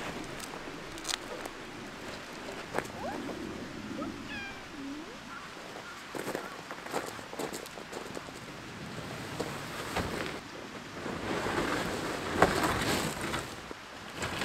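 A cat meows briefly, about four seconds in, among the clicks of plastic clips snapping onto aluminium tent poles and the rustle of the nylon tent fabric. Near the end the rustling and footsteps on gravel grow louder, with one sharp knock.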